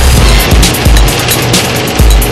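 Background music with a heavy, driving beat: strong bass thumps and sharp drum hits repeating every few tenths of a second.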